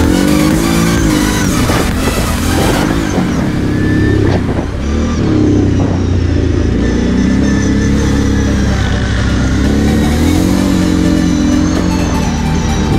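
Kawasaki KFX 700 quad's V-twin engine heard close up from the riding quad, its pitch rising and falling several times as the throttle is opened and eased off.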